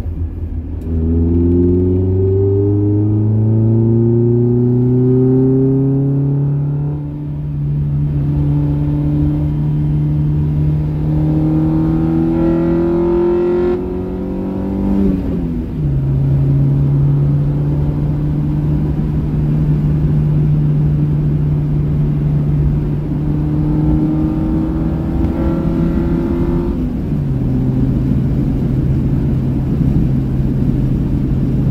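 Honda Prelude's G23 four-cylinder (F23 block with H22 head) pulling hard from inside the cabin, its note climbing steadily for several seconds. The pitch drops sharply about halfway through, holds steady, then climbs and drops sharply again near the end, over a constant road rumble.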